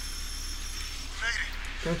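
Low steady hiss with a few faint, steady high tones, broken by a short spoken word about a second in and speech starting just before the end.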